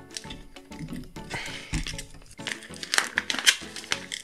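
Plastic snack pouch crinkling and rustling in the hands as it is gripped and twisted in an attempt to tear it open, over background music.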